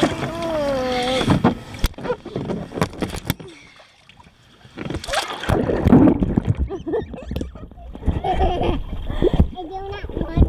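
Water splashing and sloshing in a shallow inflatable pool, with a muffled underwater stretch about halfway through. A high voice sounds briefly at the start and again near the end.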